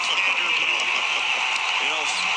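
Home arena crowd cheering and chattering in a steady wash of noise, just after a home-team basket, with a few faint short squeaks or ticks from the court.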